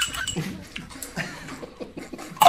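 A small pet dog making several short, low whining sounds.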